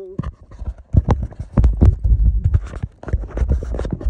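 Irregular clicks and knocks over a low rumble: handling noise from a phone being jostled and tumbled in the hand.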